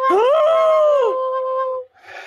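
Recorder playing one held note that slides up at the start and then sags slightly in pitch, giving a wavering, howl-like sound. The note lasts under two seconds and stops abruptly.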